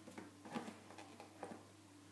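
Toothbrushes being handled: a few faint taps and clicks, spread over about a second and a half, over a steady low hum.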